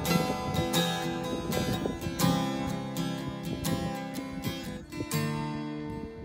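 Acoustic guitar strummed, with chords ringing between the strokes. The last chord, struck about five seconds in, rings and fades.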